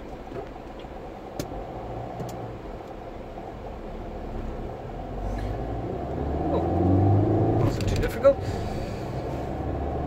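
Car engine and road noise heard from inside the cabin, swelling as the car pulls away and gathers speed about halfway through. A few sharp clicks, the loudest near the end.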